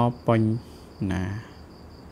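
Insect chirping: a high, steady, pulsing trill that goes on throughout, under two short phrases of a man's speech in the first second and a half.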